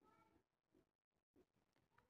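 Near silence: the sound track is all but empty between phrases of speech.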